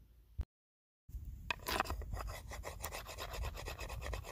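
Flint-knapping hammerstone rasped against a cow jawbone in quick, repeated scraping strokes, filing down its rough outer edge. The strokes begin about a second in.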